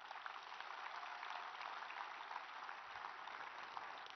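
Large auditorium audience applauding: a steady, faint patter of many hands clapping.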